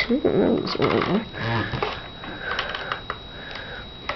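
A voice murmuring without clear words, then a few soft clicks of the plastic Transformers Animated Swindle figure's parts as its legs are split and moved.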